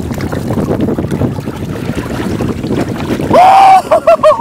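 Wind buffeting the microphone over water sloshing around the wading men as a big redfish is let go. Near the end comes one loud, held whooping shout of joy.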